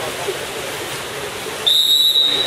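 Pool-hall din of splashing water and voices, then about one and a half seconds in a referee's whistle blows: one loud, steady, high note that carries on past the end.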